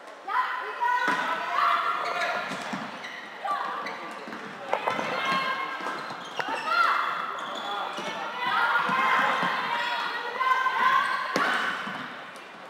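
Floorball game sounds in an echoing sports hall: voices shouting and calling, broken by sharp knocks of sticks and the plastic ball on the floor and boards, the loudest several seconds apart.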